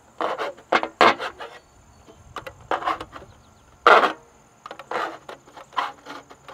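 Knife point piercing and scraping the side of a disposable aluminium foil pan, the thin foil crinkling in a series of short irregular bursts as air holes are punched through it. The loudest burst comes about four seconds in.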